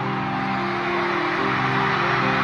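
Live band at an arena concert playing sustained chords that change every second or so, over a steady haze of crowd noise.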